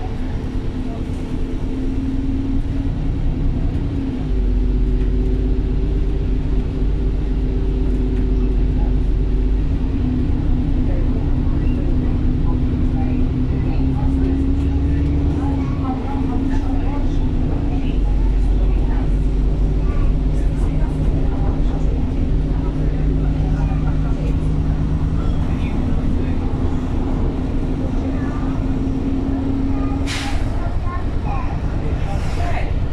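A bus's diesel engine and drivetrain, heard from inside the passenger saloon as the bus drives along, with a steady drone and a low rumble that swells and fades. Near the middle the drone's pitch climbs a little, then drops back and holds steady. Passengers talk faintly in the background.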